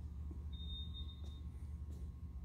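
A short high-pitched electronic beep, one steady tone just under a second long, starting about half a second in, over a steady low hum.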